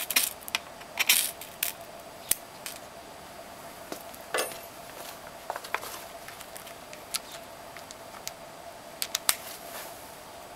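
Short, sharp metal-on-metal scrapes at irregular intervals: a steel knife struck along a ferro rod to throw sparks onto fatwood scrapings, which catch and burn.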